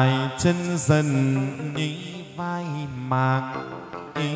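Chầu văn ritual singing for a hầu đồng ceremony: a voice chanting long, drawn-out notes that bend and waver, over instrumental accompaniment, with a couple of sharp clicks in the first second.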